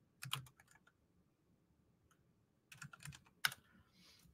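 Typing on a computer keyboard: a short run of keystrokes just after the start, a pause, then another short run from a little under three seconds in.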